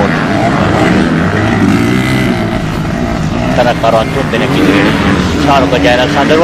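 Racing motorcycle engines running at speed on the track, a steady engine drone.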